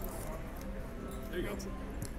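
Murmur of background voices on a casino floor, with a faint voice rising briefly about a second and a half in.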